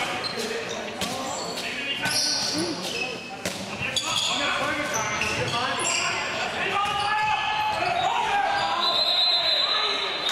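Handball match sounds in a large sports hall: the ball bouncing on the court floor with sharp knocks, short high shoe squeaks, and players shouting, all echoing in the hall.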